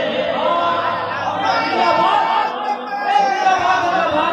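A man reciting a naat over a public-address system in a large hall, his voice drawn out on long held notes, with crowd chatter behind.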